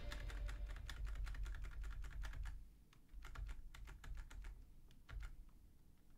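Faint rapid clicking of a computer keyboard and mouse during note editing: dense clicks for the first two and a half seconds, then sparser single clicks.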